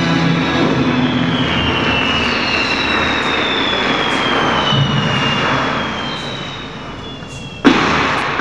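Electroacoustic music played from a laptop: a dense noisy drone with thin high tones sliding slowly downward, fading through the second half. Near the end a sudden loud hit breaks in, the loudest sound here, with a ringing tail.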